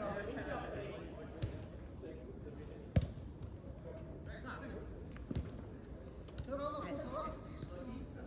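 A football being kicked during play: three sharp thuds, the loudest about three seconds in, among shouts from the players on the pitch.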